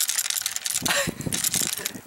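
Crosman 760 Pumpmaster air rifle being shaken: a small loose metal piece inside rattles in a rapid run of metallic clicks. The loose part is inside the gun and, by the owner's belief, has to do with the trigger.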